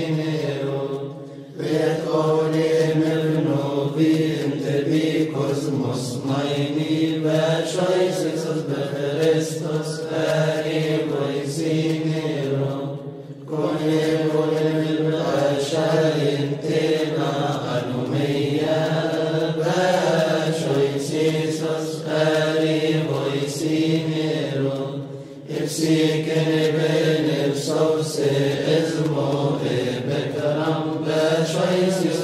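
Coptic liturgical chant sung by male monks: a melodic line moving over a steady low held note, with three brief pauses for breath about twelve seconds apart.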